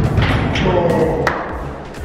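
A football kicked with a thud at the start, then a sharp click about a second in, with a voice and background music under it.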